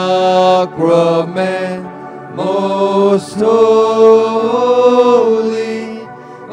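A slow Eucharistic hymn sung in long, drawn-out notes, each held for a second or two with short breaks between them.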